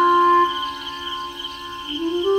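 Background music: a slow melody of held, pitched notes, loudest at the start and softening after about half a second.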